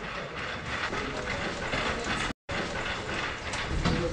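Rattling and clicking of a wheeled hospital stretcher being pushed along a corridor, with people walking alongside. The sound cuts out completely for a moment a little over two seconds in.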